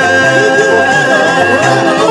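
Loud amplified band music: a wavering sung melody over a steady repeating bass line, with one high note held almost throughout.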